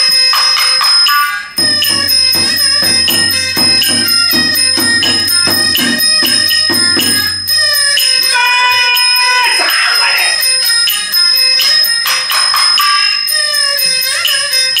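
Live Chinese shadow-play ensemble music: a gliding bowed-string melody over quick, evenly repeated percussion strokes and small ringing bell-like metal percussion.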